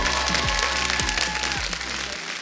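Audience applause over play-off music with held chords and a deep, sliding bass line; the bass drops out near the end.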